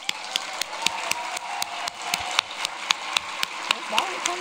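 Audience applauding, with one person's sharp claps close to the microphone standing out above the crowd at about four a second.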